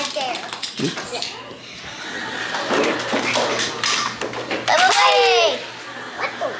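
Children's voices: unclear chatter, with a high, drawn-out call from a child about five seconds in.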